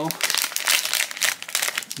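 Silver foil blind-box pouch crinkling as hands pull it open and crumple it, a dense run of crackles.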